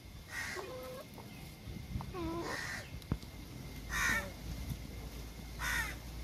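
Domestic chickens calling in short bursts, four calls about a second and a half apart, with a single sharp click in the middle.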